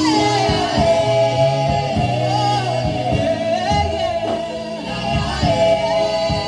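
A woman singing a gospel worship song into a microphone, holding long notes, over live instrumental accompaniment with a steady beat.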